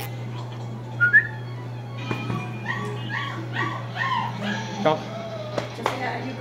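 A dog whining: a short high squeak about a second in, then a run of quick, repeated whines.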